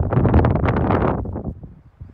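Wind blowing across the microphone, loud and noisy, dying away about a second and a half in.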